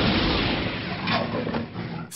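A loud, dull rumbling sound effect with no clear pitch that slowly dies away over the two seconds.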